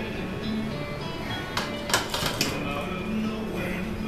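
Background music with vocals playing, and a quick cluster of metallic clanks about two seconds in as a loaded barbell is set back into the bench-press rack.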